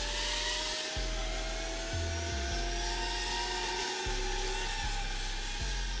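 A steady electric motor whine that rises slowly in pitch, with a second lower whine that stops a little before the end, over low wind rumble buffeting the microphone.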